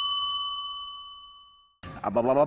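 A single bell-like ding sound effect for a title card: one struck tone ringing and fading away steadily, dying out just before the end.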